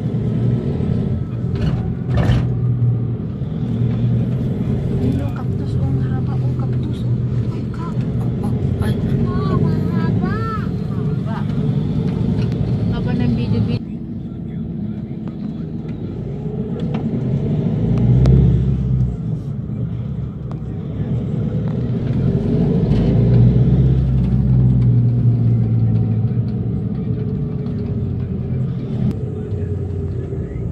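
A vehicle engine running steadily as it travels along a road, its sound swelling and easing with speed; the sound changes abruptly about halfway through.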